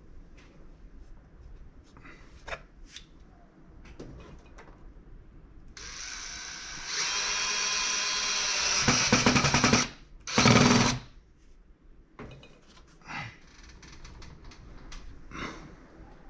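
DeWalt cordless drill/driver running for about four seconds, picking up speed partway, then a second short burst, as it works screws in the wooden base board. Light knocks of wood and tools being handled come before and after.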